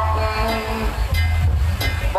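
Live Lakhon Bassac opera music, amplified: instruments over a heavy bass beat, with a held note in the first half and a few sharp percussion strikes.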